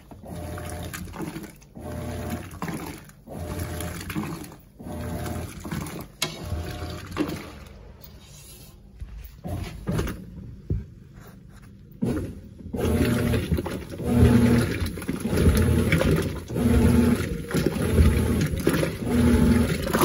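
Mueller Popmatic 8 kg top-load washing machine, fitted with a Colormaq agitator, agitating water with no clothes in the tub: the motor hum and the churning, sloshing water rise and fall in strokes about every second and a half. From about 7 to 12 seconds in the sound turns quieter and duller, then comes back louder and denser.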